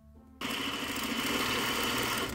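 Sewing machine running at a steady speed, stitching a seam through fabric strips. It starts about half a second in.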